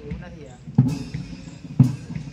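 Brass band playing at a distance, its bass drum struck twice about a second apart with a bright clash on each beat.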